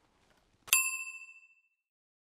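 A single bright metallic ding about three quarters of a second in, ringing and fading out within about a second. It is a chime sound effect marking the show's end logo.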